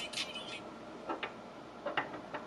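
A few short, sharp plastic clicks as wet Skullcandy true wireless earbuds are picked up and handled on a hard surface. One click comes just past a second in and another near the end. Background music cuts off about half a second in.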